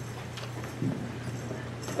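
A few soft knocks and rustles as papers and a laptop are handled on a lectern, over a steady low hum.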